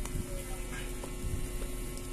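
Steady low electrical hum, with a few faint knocks.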